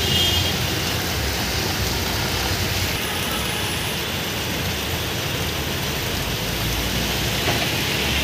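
Steady rushing noise of heavy rain and road traffic on a wet street, with buses and auto-rickshaws passing through the water.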